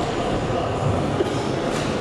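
Steady, loud, echoing din of a crowded sports hall around a kickboxing ring: many voices and shouting blended together, with a faint knock near the end from the fighters exchanging blows.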